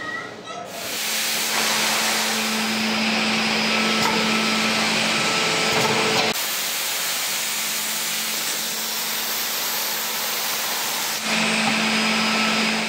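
Woodworking factory machinery running: a steady hiss over a low hum. The sound changes abruptly about six seconds in and again near the end.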